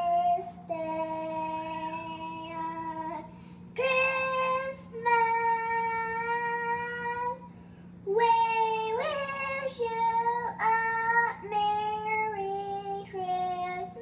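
A young girl singing without clear words, holding long notes of one to two seconds each, with short pauses about three and a half and eight seconds in. A steady low hum runs underneath.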